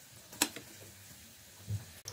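Faint sizzle of samosas deep-frying in oil in a kadhai, with a single sharp click about half a second in and a short low thump near the end.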